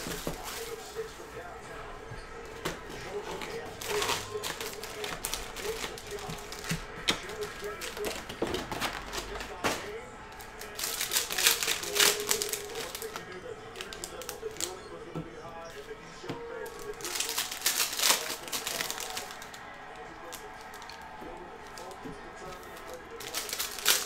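Plastic shrink-wrap crinkling and tearing as it is stripped off a cardboard hobby box of trading cards, then the box opened and its foil packs handled. The rustling comes in several bursts, the loudest about eleven and seventeen seconds in.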